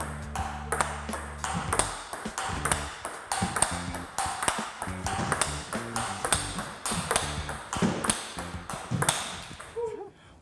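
Table tennis ball being blocked in a rally: quick, evenly paced clicks of the ball off bat and table, about two to three a second, over background music.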